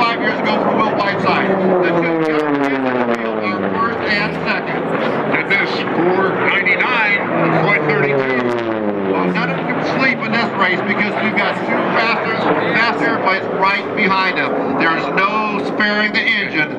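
Piston-engined Unlimited-class racing warbirds flying past low. The engine drone drops in pitch twice, at about two seconds and again at about six and a half seconds, as aircraft go by.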